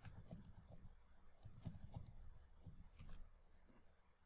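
Faint typing on a computer keyboard: quick runs of keystrokes, in three bursts.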